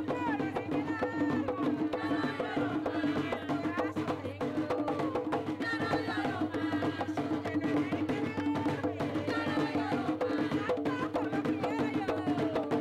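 Panamanian tamborito: voices singing over drums, with a fast, unbroken beat of sharp strikes.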